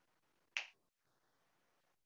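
A single short, sharp snap or click about half a second in, against near silence.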